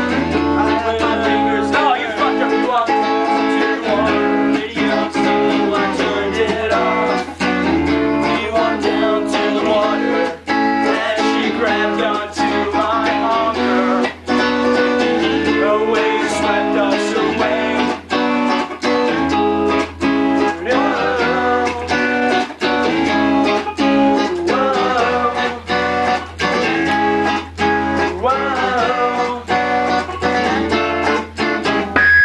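Guitar and bass guitar playing a song together with no drums, steady strummed chords over a bass line.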